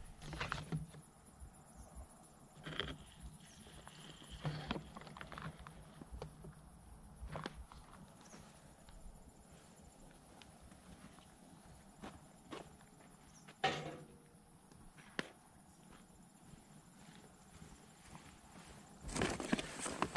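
Campfire burning quietly, with scattered sharp pops and knocks, the loudest about fourteen seconds in.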